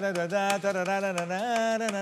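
A singing voice holds one long note that steps up in pitch about one and a half seconds in, with quick sharp ticks or claps keeping a beat over it.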